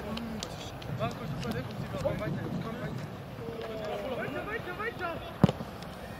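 Footballers' shouts and calls carrying across an outdoor pitch, faint and scattered, with one sharp thud of a ball being kicked about five and a half seconds in.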